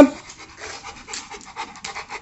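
Large dog panting with its tongue out: quick, even breaths in and out.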